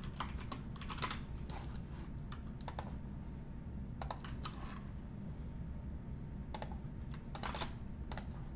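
Typing on a computer keyboard: short, irregular keystrokes in small clusters with pauses between them.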